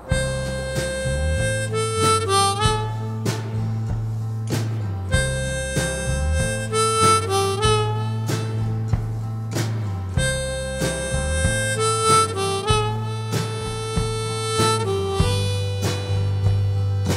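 Instrumental song intro: a harmonica plays a blues-style riff with bent notes over a steady bass line and regular drum beats. The phrase repeats about every five seconds.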